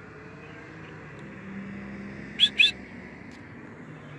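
Two short, sharp bird chirps in quick succession about two and a half seconds in, over a faint steady engine hum in the distance.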